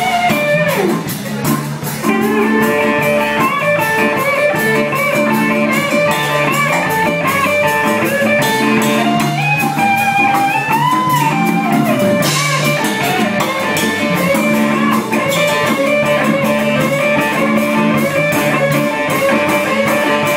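Live blues-rock band playing an instrumental passage, led by an electric guitar whose notes bend up and back down near the middle, over a drum kit keeping time on the cymbals.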